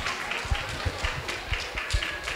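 Thin audience applause, with a few louder sharp knocks about every half second.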